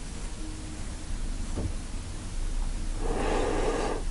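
Quiet room tone with one faint click about one and a half seconds in, then a short breath-like rush of noise in the last second, as of an inhale before speaking.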